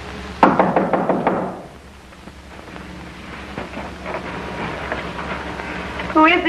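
A sudden burst of rapid loud knocks about half a second in, dying away over about a second, followed by faint scattered clicks and scuffing.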